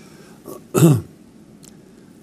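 An elderly man clears his throat once, a short sound that falls in pitch, just under a second in, after a faint smaller sound before it.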